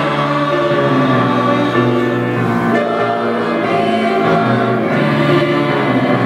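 A middle-school choir of boys and girls singing together in parts, holding long sustained notes that change pitch together.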